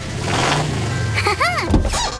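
Cartoon sound effect of a fire truck's engine driving up, its low note rising and then falling as it pulls in and stopping sharply near the end. A short rising-and-falling voice exclamation sounds over it about one and a half seconds in.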